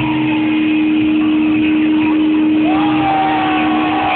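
Live rock concert heard from within the audience: a steady held drone note from the stage over a dense wash of noise, with a sliding tone that rises and holds about three quarters of the way through.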